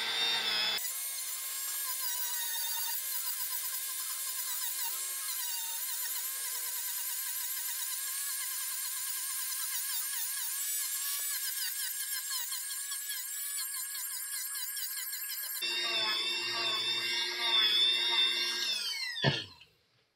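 Dremel 4000 rotary tool with a sanding drum grinding a bevel into the edge of EVA foam: a high, wavering whine that shifts as the bit bites the foam. It gets lower and louder for the last few seconds, then is switched off and winds down near the end.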